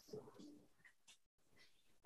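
Near silence: room tone, with a faint, brief low sound in the first half second.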